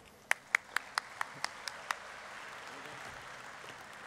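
Audience applauding. A run of loud single claps, about four or five a second, stands out in the first two seconds, over a steady wash of crowd applause that swells and holds.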